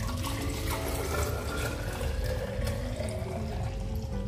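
Frothy grape juice poured from a glass jar into a glass, a steady splashing pour of liquid.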